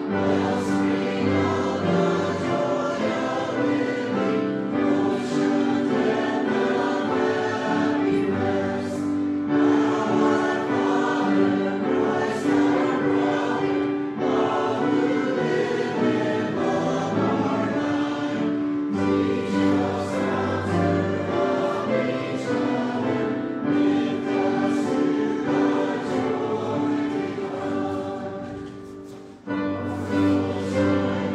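Church choir singing a hymn, with a short break near the end before the singing picks up again.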